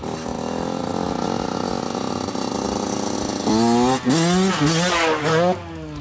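Yamaha YZ125 two-stroke single-cylinder dirt bike running at a steady pitch. About three and a half seconds in it gets louder and revs up and down hard for a couple of seconds as the rider opens the throttle to lift the front wheel.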